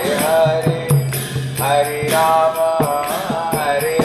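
Devotional chanting sung to a melody, with hand cymbals jingling and percussion strikes keeping the rhythm.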